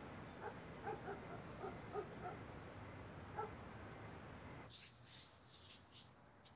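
Faint low street rumble with a run of about a dozen short, high yips from a dog. Near the end it gives way to quieter room tone with a few soft rustles.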